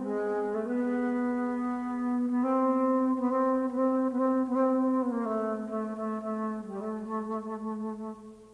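Solo jazz flute playing long, low held notes, with more than one pitch sounding at once at times, that step to new pitches every second or two.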